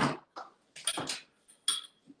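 A few short knocks and clatters from fridge-side handling as a container is fetched, with a brief squeak near the end.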